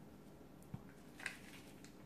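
Near quiet, with two faint brief sounds about three-quarters of a second and a second and a quarter in, as a stick of butter is peeled from its paper wrapper and dropped into a stainless steel mixing bowl.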